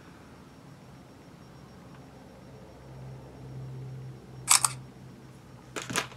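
Smartphone camera shutter sound: one quick double click about four and a half seconds in, as a photo is taken. A few faint handling clicks of the phone follow near the end.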